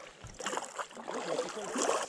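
Water splashing and lapping around a kayak's hull with soft paddle splashes as the kayak glides along a calm river.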